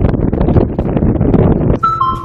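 Small fishing boat's machinery, its engine and deck net hauler, running with a loud, steady mechanical clatter as the gillnet starts to be hauled aboard. The clatter breaks off near the end.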